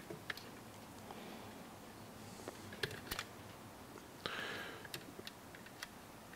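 Faint, scattered small clicks of plastic RC-car suspension parts and the wire sway bar being handled and seated by hand, with a brief rustle about four seconds in.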